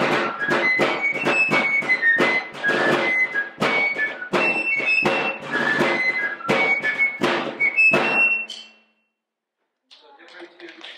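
Wooden fife playing a lively 18th-century military tune, with a rope-tension field drum beating along in quick strokes. The tune ends shortly before the end.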